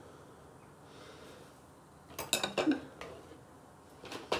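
A table knife clicking and scraping against a plastic tub of spread and a slice of bread, in a short cluster of sharp clicks a little past halfway through, after a quiet start.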